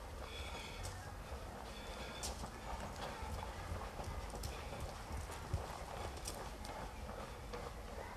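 Footsteps on stone ground and stone steps: scattered, irregular knocks, with one sharper knock about five and a half seconds in, over a steady low rumble.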